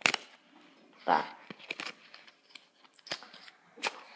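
A few sharp clicks and snaps of a playing card being flicked and handled between the fingers, with two crisp snaps near the end.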